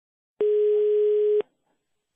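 Telephone ringback tone heard down the phone line: one steady mid-pitched beep lasting about a second. It is the sign that the called number is ringing at the other end.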